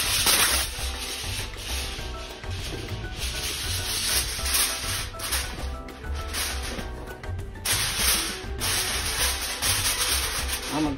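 Heavy-duty aluminium foil crinkling and rustling as a sheet is pulled from the roll and pressed and crimped over a baking pan. It comes in irregular bursts, loudest near the start and about eight seconds in.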